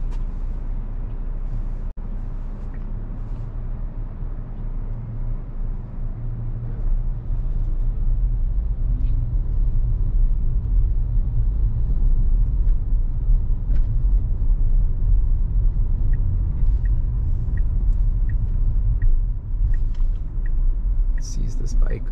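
Road and tyre rumble inside the cabin of a Tesla Model Y, an electric car, driving on city streets: a steady low rumble that grows a little louder about seven seconds in. Over the last few seconds faint regular ticks come about every 0.7 seconds.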